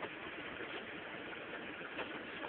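Faint steady background hiss with no distinct sounds in it.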